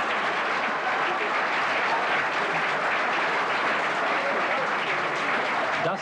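Studio audience applauding and laughing, a steady wash of clapping that holds at one level throughout.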